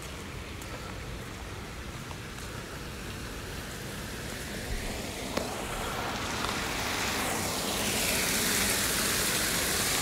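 Water from a negative-edge pool spilling over the edge wall and splashing into the catch tank below, a steady rushing splash that gets louder over the second half.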